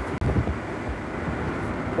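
Steady low rumble of engine and road noise inside a moving vehicle's cabin, broken by a very short dropout just after the start.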